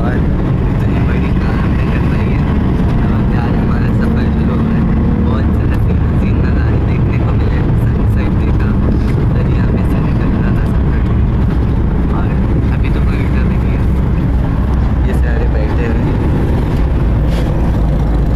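Steady, loud engine and road rumble heard from inside a moving passenger bus.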